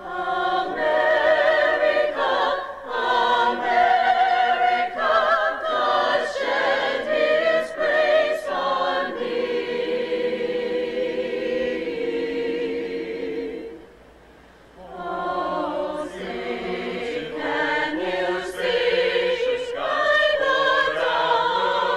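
High school choir singing the national anthem, many voices together with a long held note and a brief pause about fourteen seconds in before the singing resumes.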